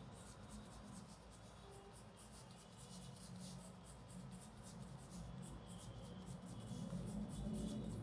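Faint scratching of a colored pencil on paper in many short, quick strokes as small details are drawn in, over a low steady hum.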